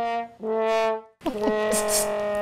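Sad trombone 'wah-wah-wah-waah' sound effect: short brass notes stepping down in pitch, then a long held final note starting just over a second in. It is the comic cue for a joke falling flat.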